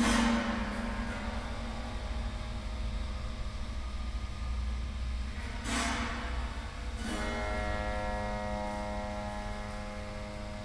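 Strings of a dismantled upright piano, amplified, struck and left ringing: a strike at the start and another about six seconds in, each ringing on as a cluster of many tones. From about seven seconds a sustained chord of steady tones holds, over a constant low hum.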